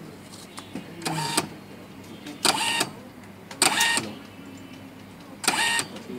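Essae PR-85 thermal receipt printer printing a receipt, its paper-feed mechanism running in four short bursts of about half a second each, spaced a second or more apart.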